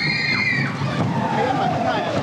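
Small roller-coaster cars rumbling along their track, with a high squeal held for about a second at the start and a falling whine near the end.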